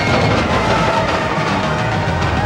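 Music over the rumble and clatter of a roller coaster train running along its steel track.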